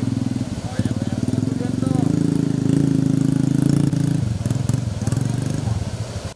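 Motorcycle engine running close by with a fast, even beat, growing louder in the middle and easing off again; faint voices of people talk behind it.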